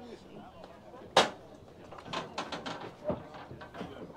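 One sharp knock a little over a second in, followed by a run of lighter clicks and taps, over faint background voices.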